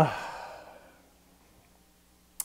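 A man's long sighing "ah": the voice starts strong and falls in pitch, then trails off into a breathy exhale over about a second, leaving only faint room tone.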